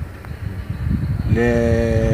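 Low wind rumble on the microphone. From a little past halfway, a man holds a drawn-out, steady hesitation vowel before speaking on.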